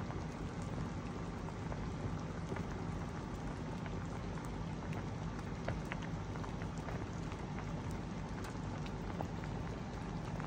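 Broth in a stainless steel nabe hot pot coming to a boil: a steady bubbling hiss with small pops scattered throughout.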